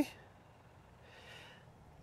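A quiet pause between a man's sentences, with a faint soft breath about a second in.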